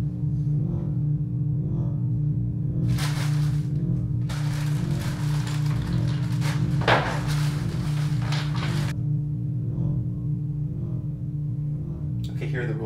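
Low, steady drone of film-score music holding one tone. Over it, wrapping paper tearing and rustling as a present is unwrapped: briefly about three seconds in, then again for about four seconds.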